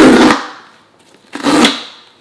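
Cardboard shipping box torn open along its pull-tab tear strip: two loud ripping tears, one at the start and one about one and a half seconds in.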